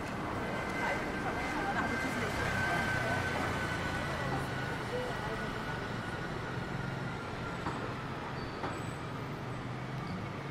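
Busy city street traffic: double-decker buses and cars running past with a steady low engine hum, under a general road noise.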